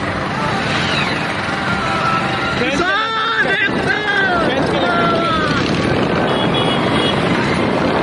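Tractor engines running steadily, with a voice shouting for a couple of seconds about three seconds in.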